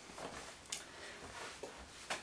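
Faint rustling of a fabric pillow sham being flipped over and laid flat on a cutting mat, with a light tap about three quarters of a second in.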